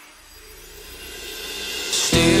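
Electronic hardcore music in a quiet build-up: low held tones under a hissing noise sweep that swells steadily louder toward the end.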